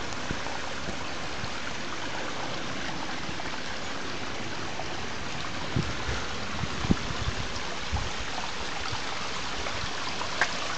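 Water running steadily from a small stone-walled spring outlet and trickling over the stones, a continuous rushing. From about six seconds in, a few dull thumps of footsteps on the muddy, stony path.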